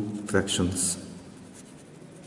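A man's voice briefly in the first second, then a pen scratching on paper as words are written out by hand.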